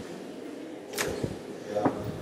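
A glass-paned door being pushed open and swinging shut: a sharp swish about a second in, then a louder knock with a brief ring near the end.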